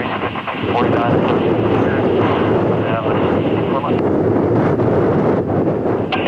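Boeing 787 Dreamliner's jet engines running steadily as the airliner rolls along the runway, with wind on the microphone.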